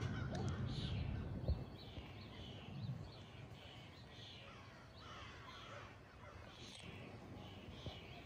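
A bird calling outdoors, a long run of short, falling calls repeated about twice a second, faint.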